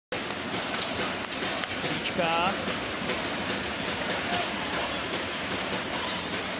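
Ice hockey arena crowd noise, a steady murmur from the stands during play, with a few sharp clicks in the first two seconds and a short voice about two seconds in.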